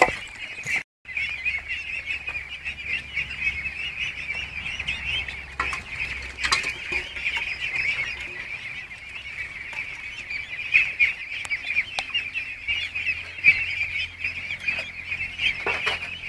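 A flock of young ducks peeping together in a dense, continuous chorus of high calls, broken by a brief dropout about a second in.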